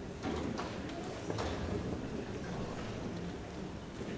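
Three light footsteps on the stage floor in the first second and a half, over the steady room noise of a large hall.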